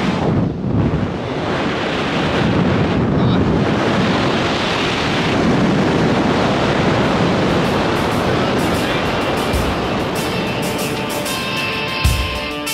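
Wind blowing hard over the camera's microphone during a descent under an open parachute canopy. Music begins to fade in near the end.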